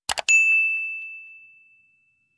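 Two quick mouse clicks, then a notification-bell ding: one clear high tone that rings out and fades away over about a second and a half.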